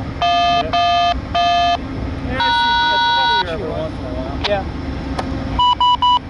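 VIA Rail GE P42DC locomotive's Nathan K5LA air horn sounding three short blasts, then one longer blast of about a second. Two short, higher tones follow near the end.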